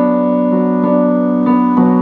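Digital keyboard on a piano voice playing a held chord, with a few single notes added over it about a second in and near the end, noodling on the chord tones.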